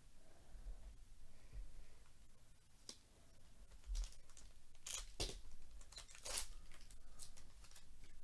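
Foil trading-card pack being torn open and crinkled by hand: a string of short crackling rips, starting about three seconds in and most frequent in the second half.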